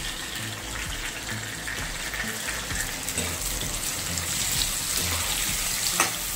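Chopped tomatoes and browned onions frying in hot oil in a deep pan: a steady sizzle, with a steel spoon scraping and stirring through them near the end.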